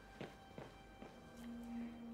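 A few quiet footsteps walking away across a hard floor, about 0.4 s apart. Soft background music underneath holds a steady low note from a little past halfway.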